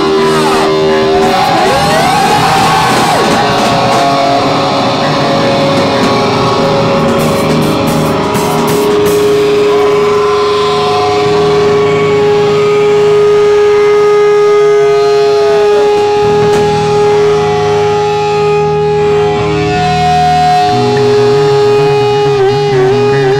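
Live rock band playing loud: overdriven electric guitar with bent notes early on, then a long held guitar note ringing over the drums.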